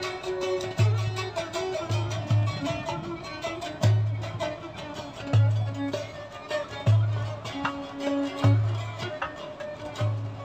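Instrumental Turkish folk tune on violin and bağlama, with a goblet drum (darbuka) keeping time with deep strokes about every second and a half and lighter strikes between them.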